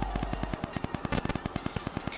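Microphone static: a rapid, even run of crackling clicks. It comes from the substitute microphone used in place of a lapel mic, which puts much more static than normal on the recording.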